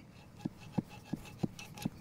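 Steel soil probe tapping on the top of a buried septic tank: five light taps, about three a second, each with a short hollow ring. The hollow ring is the "echo of a tank" that shows the probe has struck the tank.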